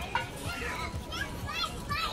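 Young children's high-pitched voices calling out, a few quick rising and falling calls mostly in the second half, over the low murmur of people talking.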